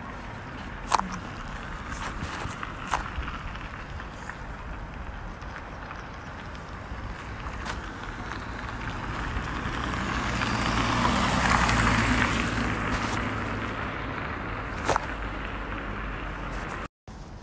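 Outdoor road traffic: a car passes, building to its loudest about eleven to twelve seconds in and then fading, over a steady low traffic hum. A few sharp clicks are scattered through it.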